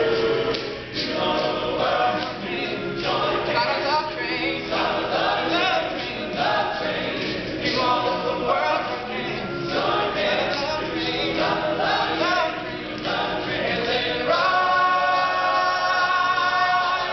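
All-male a cappella group singing: a lead voice with bending, ornamented lines over the group's sustained backing harmonies. About fourteen and a half seconds in, the group settles into loud held chords.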